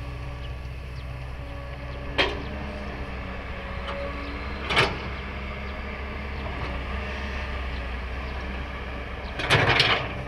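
Kobelco SK200 hydraulic excavator's diesel engine running steadily while it digs and swings, with sharp knocks about two seconds in and near five seconds, and a louder cluster of knocks near the end.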